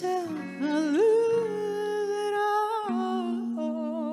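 A female voice holds a long wordless sung note into the microphone, sliding up to it about a second in, then moves to a lower note with vibrato near the end. Electric guitar chords sound underneath.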